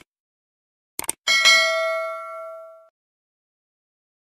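Subscribe-button sound effect: a quick double mouse click about a second in, then a single bright bell ding that rings on and fades out over about a second and a half.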